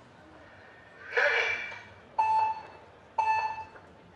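Speed-climbing start signal over the loudspeaker: a short spoken call about a second in, then two identical electronic beeps a second apart. These are the countdown tones that come before the final start beep.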